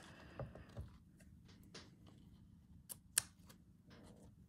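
Quiet handling of a handmade paper journal: soft paper rustling and a few light taps and clicks, the loudest about three seconds in.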